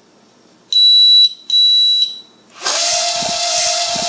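Two long, high electronic beeps, then the Andromeda Kodo micro quadcopter's four motors and propellers spin up quickly to a loud, steady high whine as it lifts off, with a couple of low thumps.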